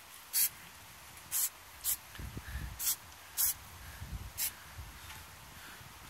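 Aerosol can of grey spray paint giving six short hisses, roughly one a second, as the paint is sprayed on in quick dabs.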